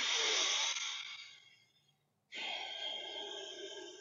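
A man demonstrating a slow, deep breath through the nose into the belly: a breath in lasting about a second and a half, a pause of under a second, then a longer breath out that fades away.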